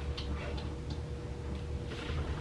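A few faint, unevenly spaced clicks over a steady low hum with a thin steady tone.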